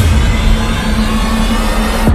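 Cinematic sound effect for an animated logo reveal: a loud, dense rushing rumble over a steady low drone.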